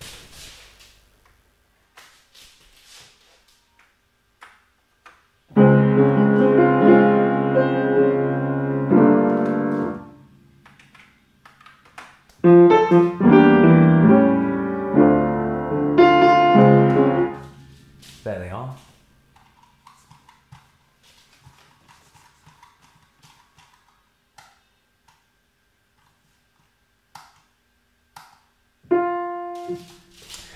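Yamaha U30 upright piano sounding two short passages of chords, the second with a melody line on top, played back through the piano by its Disklavier system. Near the end a single note is struck once and rings, sounded through the piano as a note is clicked on in the editing software.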